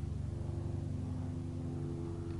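Steady low machine hum made of several fixed low tones.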